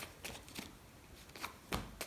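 A deck of tarot cards being shuffled by hand: a few quick, soft card clicks at the start, a lull, then two more near the end, the last with a dull thump.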